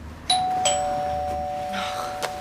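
Two-tone ding-dong doorbell chime: a higher note and then a lower one struck a moment later, both ringing on and slowly fading.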